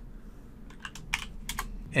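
Computer keyboard being typed on: a quick run of keystroke clicks in the second half, over a faint low hum.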